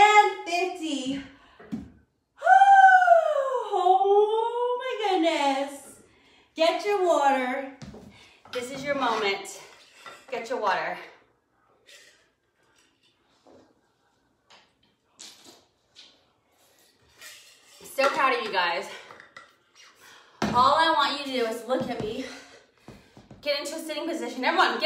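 A woman's voice talking and calling out in bursts, with one long gliding call early on and a quiet gap of a few seconds in the middle.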